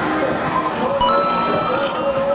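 Arcade game machines playing electronic music and tones. About a second in there is a soft thump, and a few steady high electronic tones start.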